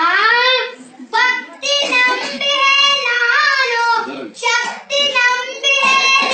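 A boy singing unaccompanied: one voice carrying a melody with long, gliding held notes, in phrases broken by short pauses for breath.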